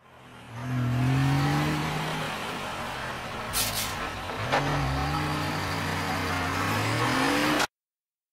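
A car engine revving, sped up like the rest of the track: its pitch glides up and down as it fades in, with a short hiss about three and a half seconds in, and it cuts off abruptly near the end.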